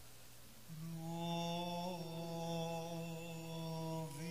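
A man's voice chanting Byzantine liturgical chant. It begins a little under a second in and holds one long drawn-out note with a slight waver partway through.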